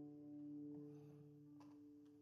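The final chord of an acoustic-guitar song ringing out and dying away, fading to near silence about a second in.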